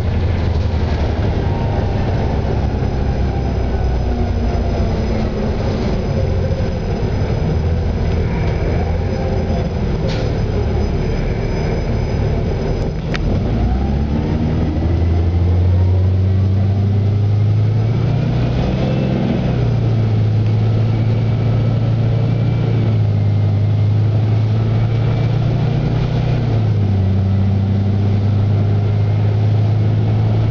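Cab noise inside a 2007 Eldorado National EZ Rider II transit bus. Its Cummins B Gas Plus natural-gas engine winds down slowly, and about halfway through it pulls away again with the note rising. It settles into a steady low drone that steps in pitch twice, with a single sharp click just before the pull-away.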